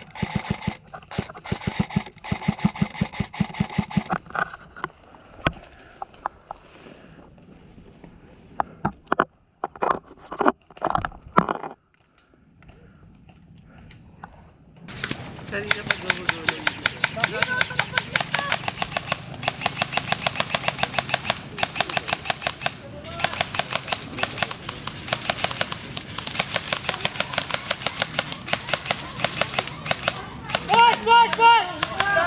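Airsoft electric rifles (AEGs) firing in fast bursts, a rapid rattle of sharp clicks. The firing thins to scattered shots for a while, then picks up again as a steady, dense rattle about halfway through.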